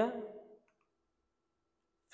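The end of a man's spoken word fading out about half a second in, then near silence.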